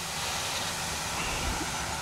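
Steady background hiss with a faint low hum underneath and no distinct events.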